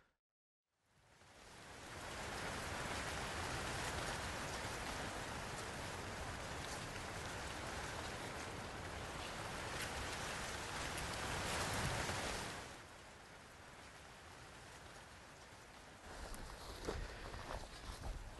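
A steady, even rushing noise with faint ticks in it, like rain, starting about a second in and falling away about twelve seconds in. A much quieter hiss and faint outdoor ambience follow.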